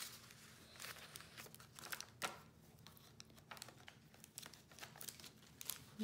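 Faint rustling and crinkling of a handmade junk journal's paper pages and tucked-in ephemera as they are turned and handled, with scattered small clicks and one sharper tap a little after two seconds.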